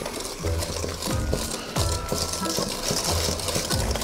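A wire whisk stirring thick egg-yolk-and-sugar batter in a stainless steel bowl, in quick, irregular strokes.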